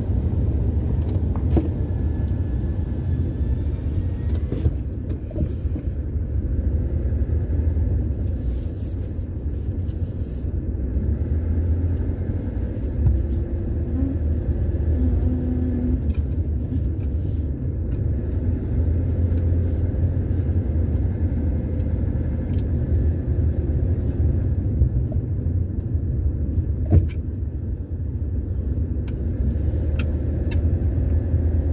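A car's engine and road noise heard from inside the cabin while driving slowly, a steady low rumble. A single sharp click sounds near the end.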